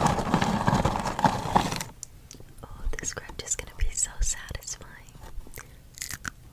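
Cardboard Cheez-It cracker box and its inner plastic bag being torn and crinkled right at the microphone, stopping abruptly about two seconds in. After that come soft whispering and sparse mouth clicks.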